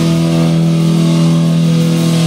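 Distorted electric guitar and bass holding one low note steady and ringing at high volume in a live heavy metal performance, picked up loud through a phone's microphone.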